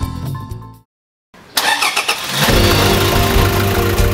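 A short jingle fades out, there is a brief silence, then a Toyota Fortuner SUV's engine starts suddenly about a second and a half in and runs on steadily under music.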